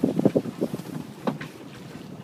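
Wind buffeting the microphone aboard a sailboat, with a quick run of knocks and clatter in the first half second and one sharper knock just over a second in.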